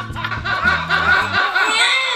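A woman laughing hard and loudly at her own joke, a rapid run of high-pitched laughs. Low sustained music notes run underneath and cut off about a second and a half in.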